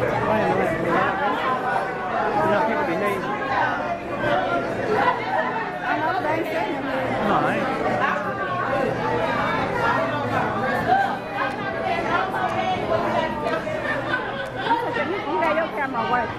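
Crowd chatter: many people talking at once across a large hall, several voices overlapping throughout.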